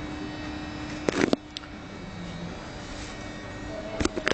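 Euskotren series 300 electric train moving along the station platform: a steady running rumble, with a short loud clatter about a second in. A steady hum stops just after the clatter.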